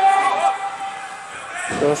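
A man speaking, with faint hall background noise between his words.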